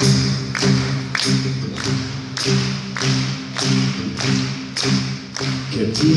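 Live pop band playing an instrumental passage: sustained chords under a steady beat of sharp percussion hits, about two a second. A male singer comes in with the words "get by" right at the end.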